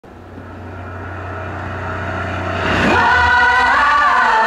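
Opening of a live concert performance: a low rumbling swell of music grows steadily louder, and about three seconds in a sustained chord of voices enters and holds.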